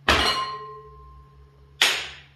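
Two sharp knocks about a second and three-quarters apart. The first is followed by a faint ringing tone.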